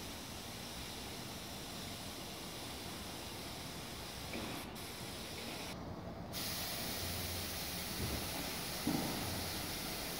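Compressed-air paint spray gun hissing steadily as it sprays paint onto a panel. The hiss breaks off for about half a second around the middle, then comes back louder, with two soft knocks near the end.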